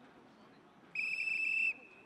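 A coach's handheld whistle blown once, a single steady high blast of under a second, about a second in.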